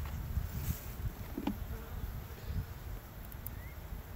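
Honeybees buzzing around an open beehive, with one buzz briefly louder about a second and a half in. Gusty wind rumbles on the microphone underneath.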